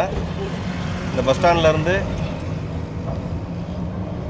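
Steady low hum of a car's engine and road noise heard inside the cabin of a moving car, with a brief voice in the middle.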